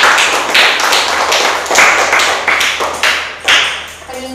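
A group clapping hands: a fast, uneven run of claps that stops shortly before the end.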